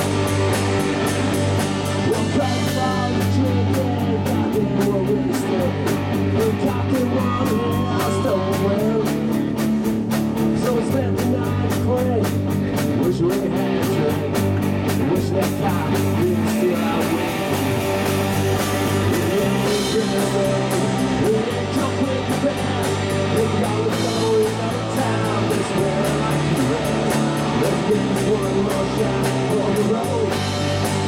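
A live garage-rock band playing: electric guitars over a bass line that changes note every second or two, with a steady cymbal beat through much of the passage.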